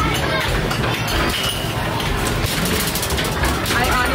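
Basketballs being shot in a Skee-Ball Super Shot arcade basketball machine, thudding and clattering over and over against the hoop and backboard during timed play, over arcade noise and voices.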